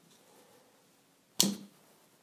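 A quick-release propeller snapping onto a Wingsland M5 drone's motor with a single sharp click about one and a half seconds in, the click that shows the blade has locked in place.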